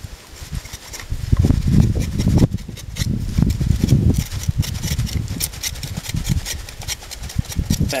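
A knife whittling a piece of poplar bark: a run of small quick cuts and scrapes, several a second, under a louder uneven low rumble.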